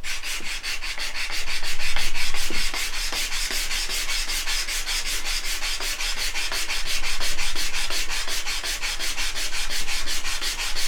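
Hand sanding a thin wooden strip with a sanding block: quick, even back-and-forth strokes, about five or six a second.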